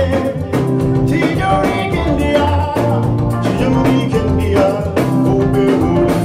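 Live band music: electric bass guitar holding low notes under a drum kit, with a male lead vocalist singing into a microphone.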